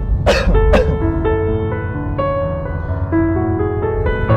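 Slow piano music with held notes, with two short coughs close together about a third of a second and three-quarters of a second in.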